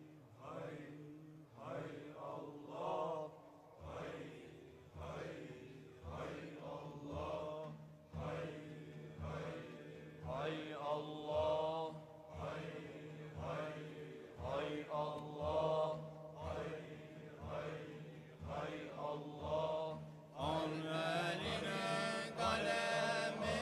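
Circle of men chanting a Qadiri dhikr (devran) in unison: short rhythmic phrases about once a second over a steady low held note. A low thump marks the beat from a few seconds in, and the chant grows louder and brighter near the end.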